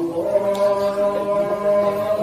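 A man's voice chanting in long, steady held notes, in the manner of an Islamic chant. It comes in right at the start, louder than the talk around it.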